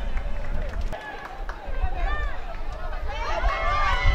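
Voices shouting and calling out on a football pitch in short rising-and-falling cries, which grow busier near the end, over a low rumble of outdoor ambience.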